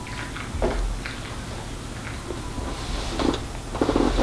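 Light handling noises as a plastic straw and a wooden ruler are moved on a glass tabletop: a few soft knocks and scrapes over a low steady room rumble.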